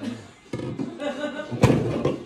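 Voices in a room, then a single loud thump about one and a half seconds in.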